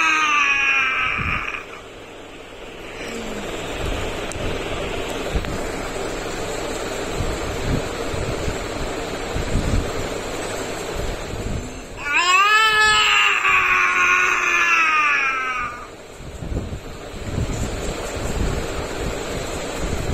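A boy crying out in two long wailing cries, each rising and then holding: one at the start lasting about two seconds, and one about twelve seconds in lasting nearly four seconds. A steady noise fills the gap between them.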